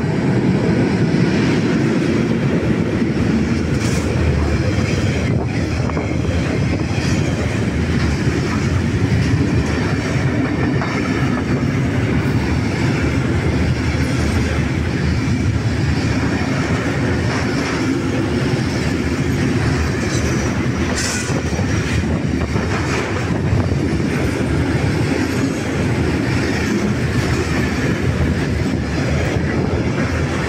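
Intermodal container freight train hauled by an FS E652 electric locomotive passing at speed: a steady, loud rumble and clatter of wagon wheels on the rails, with a few brief sharp knocks along the way.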